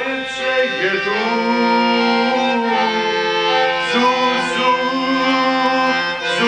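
Piano accordion playing a slow tune in long held notes and chords.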